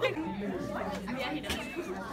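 Background chatter of several voices.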